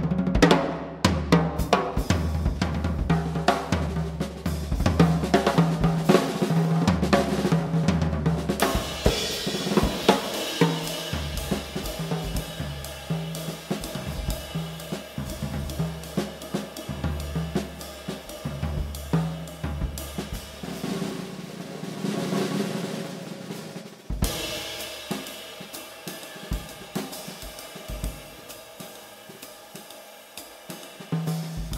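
Jazz drum kit solo: rapid snare and bass-drum hits with tom rolls, building into a cymbal and hi-hat wash. It grows quieter and sparser in the last few seconds.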